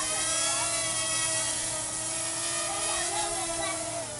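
Parrot Rolling Spider minidrone's four small electric motors and propellers whining as it hovers, a steady pitched buzz that wavers slightly in pitch as the motors adjust.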